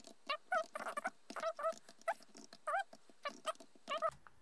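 Fast-forwarded laptop typing: quick keyboard clicks and a voice pitched up by the speed-up into short squeaky chirps, several a second.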